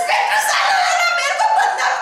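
A woman's loud, high, raspy cry, drawn out and breaking in pitch, performed as a madwoman's wail.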